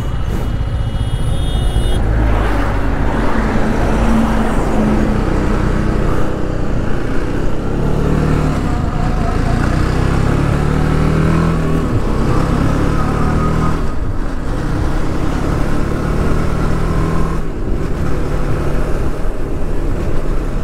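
TVS Apache RR 310's single-cylinder engine pulling away and accelerating along a highway, its note rising in pitch and dropping back several times as the rider shifts up through the gears, with wind noise on the camera microphone.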